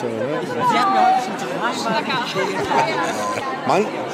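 Several people talking and chatting around the microphone in a large exhibition hall, without a single clear voice; a man begins to speak near the end.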